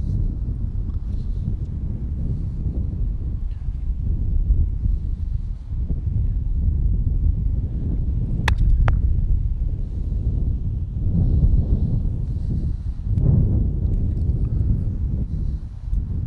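Wind buffeting the microphone as a steady low rumble. About halfway through comes a single sharp crack of a croquet mallet striking a ball, with a fainter click a moment after it.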